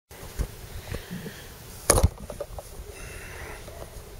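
A few short, sharp clicks and knocks, the loudest about two seconds in, over a low steady background hiss.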